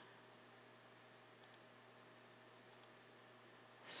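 Two faint computer mouse clicks, each a quick press-and-release, about a second and a half in and again near three seconds, over a low steady hum of room tone.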